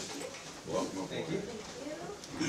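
Quiet, indistinct chatter of a few people talking at once in a meeting room, with no clear words.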